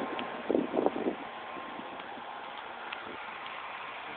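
A few footsteps on grass about half a second to a second in, over a steady hiss.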